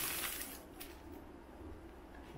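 Brief faint rustle of a paper inner sleeve as a vinyl LP is slid out, with a couple of light clicks. Then faint room tone.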